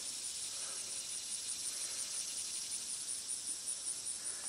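Crickets chirping steadily in the grass: a high-pitched, rapidly pulsing trill.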